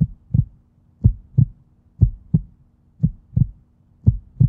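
A slow heartbeat on the soundtrack: paired low thumps, lub-dub, about once a second, over a faint steady hum.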